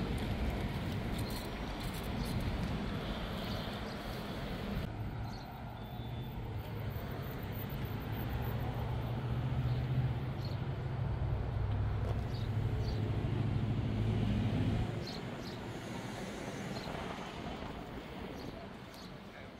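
A motor vehicle's engine running nearby with a steady low rumble, swelling through the middle and dropping away about 15 seconds in, over the general noise of outdoor traffic.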